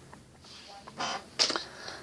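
Faint handling noises from a cut-off plastic water bottle: a short rustle about a second in, then a sharp click.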